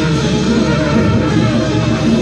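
Free-jazz group improvising together: saxophone, trumpet, plucked double bass and drum kit in a loud, dense, unbroken texture.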